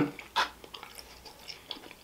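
Close-miked chewing of a mouthful of spaghetti, with a short wet lip smack about half a second in and faint small mouth clicks after it.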